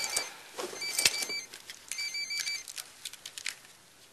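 Mobile phone ringtone: short bursts of a high electronic tone, repeating about once a second and stopping after about two and a half seconds, with a few small clicks.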